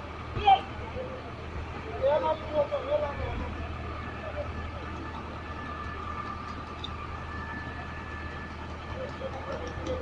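An engine running steadily with a low hum, with a faint steady whine over it, under a few brief snatches of talk.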